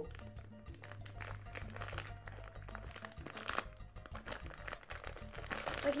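Plastic candy wrapper crinkling and crackling irregularly as hands work to open a packet of individually wrapped milk chocolates.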